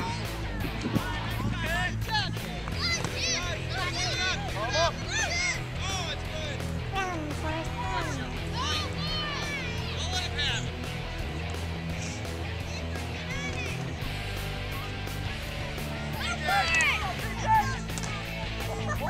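Voices calling and shouting over music that has a steady, stepping bass line, with louder calls near the end.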